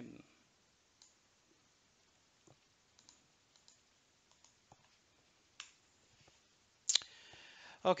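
Sparse, faint clicks of a computer mouse and keyboard as a command is copied, pasted and entered, with one sharper click about seven seconds in.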